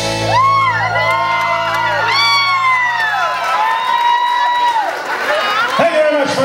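Live audience cheering and whooping at the end of a song, with several high voices gliding up and down in shouts. Under it the band's final chord rings on and dies away about two seconds in.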